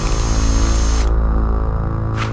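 Electric blender motor whirring steadily as a sound effect, a low hum with a hiss on top that cuts off about halfway through.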